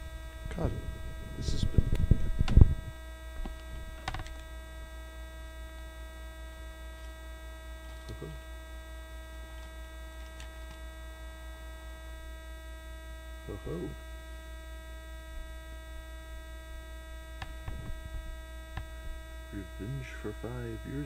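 Steady electrical mains hum with many buzzing overtones, picked up by a faulty stream audio setup. In the first few seconds there is loud handling noise as cards are pulled from a foil booster pack. After that come only a few faint ticks of cards being handled.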